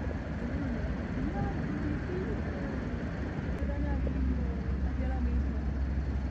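Steady low rumble of distant road traffic, growing stronger about halfway through, with faint voices in the background.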